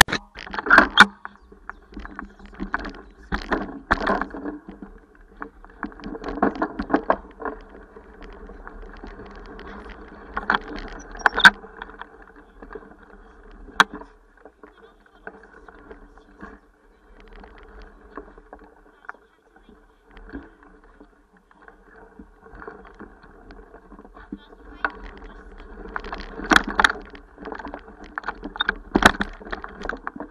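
Handling noise from a small handheld camera: rubbing and clicks on the microphone while the holder walks, in clusters with a quieter stretch in the middle. Under it runs a low steady hum.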